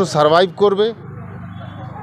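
A man speaking Bengali for about a second, then a pause filled by a steady low hum of outdoor street noise.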